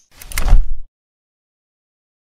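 Logo-intro sound effect: a short swelling whoosh that ends in a deep, heavy hit about half a second in, cut off sharply before the first second is out.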